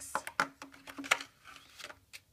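A clear plastic storage box and packets of paper embellishments being handled and packed on a cutting mat: a quick run of light plastic clicks and knocks, with some paper and cellophane rustling between them.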